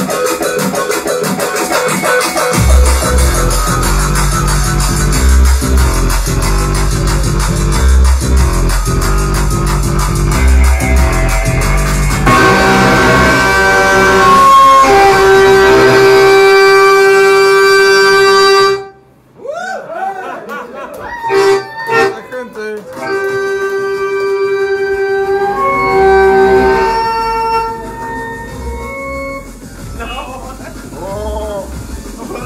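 Live punk band playing loud: electric guitar, bass and drums with vocals. About twelve seconds in the low end drops away and long held notes ring on, then the music cuts off suddenly about two-thirds through, followed by scattered voices and further held notes that fade near the end.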